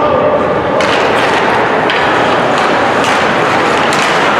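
Ice hockey play in an indoor rink: skates scraping the ice, sticks and puck knocking, and voices shouting, all echoing in the hall.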